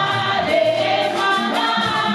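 A gospel choir singing together, with a lead voice carried over a microphone.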